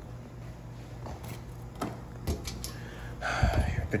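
A few light clicks and taps of small plastic toy figures being handled on a hard tabletop, with a short breathy sound near the end.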